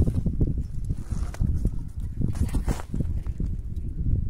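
Irregular knocks, scuffs and thumps of a folding lift net for bait fry being handled and fed into a hole in the ice, over a steady low rumble.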